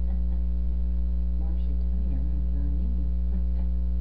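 Steady electrical mains hum with a stack of evenly spaced overtones, loud enough to dominate the recording. Faint voices are heard under it around the middle.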